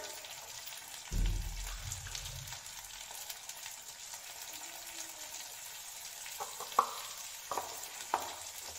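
Peas and onion frying in oil in a steel kadhai over a gas flame: a steady sizzle. A low rumble comes about a second in, and a few sharp clicks come near the end.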